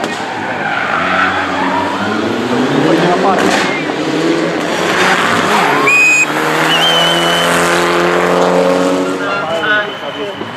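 Mitsubishi Lancer Evolution IX R4 rally car's turbocharged four-cylinder engine revving hard under load, its pitch rising and falling with throttle and gear changes, then holding at high revs near the end. Tyres squeal briefly around the middle as the car slides on the tarmac.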